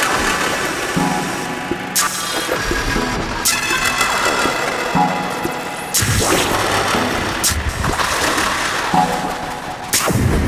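Live electronic music from a Yamaha MODX synthesizer and a Eurorack modular system: pitched synth tones with sharp glitchy clicks, and a deep bass that gets heavier about six seconds in.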